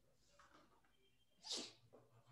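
Near silence: room tone, broken about one and a half seconds in by one short breathy hiss.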